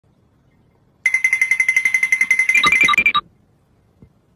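A high electronic beep pulsing rapidly, about ten pulses a second, like a ringtone or alarm. It ends in a short run of higher and lower beeps and cuts off suddenly.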